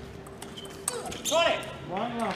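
Table tennis ball clicks in play, then a player's two loud shouts, each rising and falling in pitch, as the rally ends.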